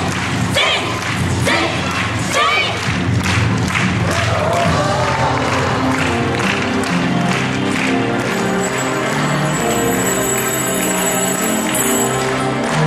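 Yosakoi dance performance: rhythmic group shouts repeat about every half second over thumps in the first few seconds. About five seconds in, dance music with steady held notes takes over.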